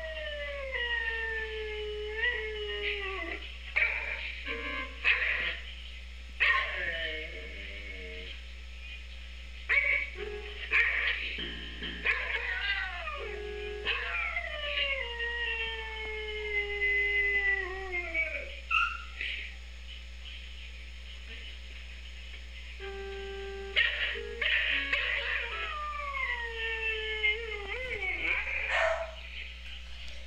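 A dog howling along to an electronic keyboard. It gives long howls that slide down in pitch, three of them the longest, while its paws strike the keys, sounding a few short steady keyboard notes and knocks between the howls.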